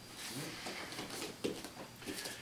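Quiet room with faint rustling and shuffling as two people in jiu-jitsu gis move on foam mats: a knee comes up off the mat and they step back apart, with a small click about a second and a half in.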